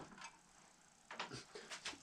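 Near silence, then a few faint clicks in the second half as a hand takes hold of a propane torch.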